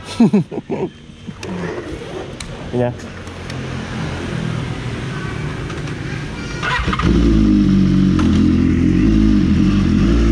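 BMW S1000RR's inline-four engine cranked and catching about seven seconds in, then idling steadily and loudly. A few short loud sounds come near the start.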